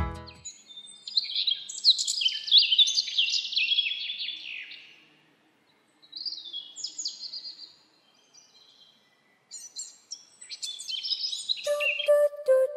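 Small birds chirping: rapid runs of short, high, falling notes in three bursts, the longest over the first five seconds, a short one around the middle, and another in the last two seconds.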